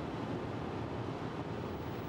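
Steady road and engine rumble heard from inside a Peugeot car's cabin while it drives along a road.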